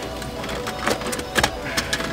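A few sharp plastic clicks as a BMW F30's dashboard trim panel is pulled straight out by hand and its retaining clips let go. Background music with steady held notes plays underneath.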